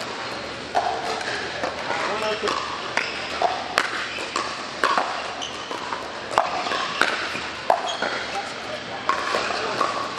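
Pickleball paddles hitting a plastic pickleball during a rally: a string of sharp pops, roughly one a second, echoing in a large indoor hall, over the chatter of voices.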